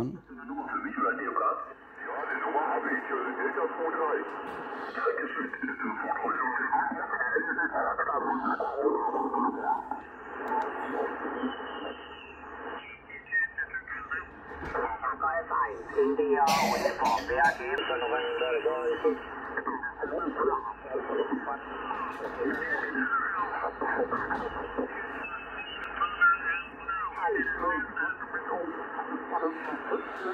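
Yaesu FT-710 HF transceiver's receiver audio as the VFO is tuned across the 40-metre band in LSB: narrow, tinny single-sideband voices slide up and down in pitch as each station is tuned through, on a band crowded with stations packed close together. One sharp knock just past halfway.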